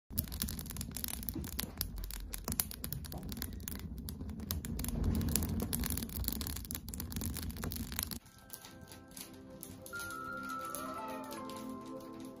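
A wood fire crackling inside a metal stove, with dense sharp crackles over a low rumble. About eight seconds in, it gives way to music with long held notes.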